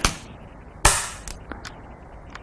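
Go stones clacking on a wall demonstration board as a move is laid down. There is a sharp clack at the very start and a louder one just under a second in, followed by a few faint clicks.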